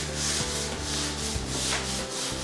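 Rubbing strokes across a hard surface, repeated a few times a second, as a stained-glass panel in its frame is worked on by hand. Music with long held low notes plays behind.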